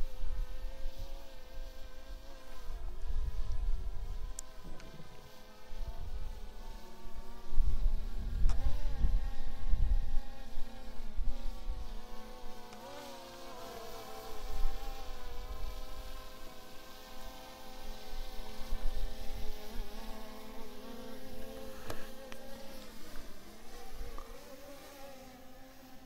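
DJI Mini 3 Pro drone's propellers buzzing with a high whine whose pitch wavers up and down as it hovers and descends. Low rumbling gusts come and go, the strongest about eight to ten seconds in.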